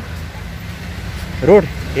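Steady low hum of road traffic passing on a highway, with a man's voice speaking a word near the end.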